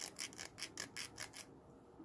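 Small hand file rasping back and forth over the cut end of 14 gauge copper wire, about five strokes a second, stopping about one and a half seconds in. It is filing off a sharp burr left on the snipped wire end.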